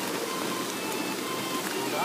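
Steady rushing noise of river water, with faint background music.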